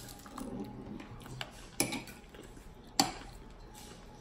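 Two light, sharp clicks about a second apart over quiet room sound.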